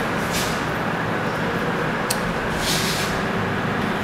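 Steady background room noise, with a short click about two seconds in and a brief faint scrape of a marker on a whiteboard near three seconds.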